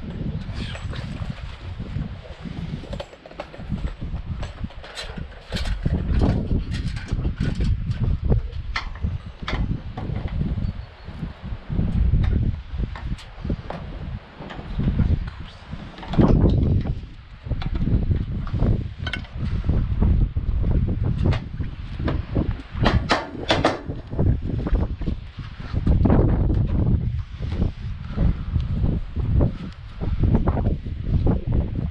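Wind buffeting the microphone, with repeated clicks and knocks as metal gutter sections and a corner piece are handled and snapped together, a quick run of sharp clicks a little after the middle.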